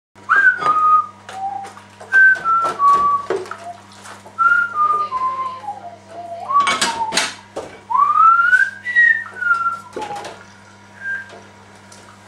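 A person whistling a tune, the notes stepping mostly downward in short phrases with a long rising swoop about eight seconds in. Scattered clicks and knocks run alongside, the loudest about seven seconds in, over a steady low electrical hum.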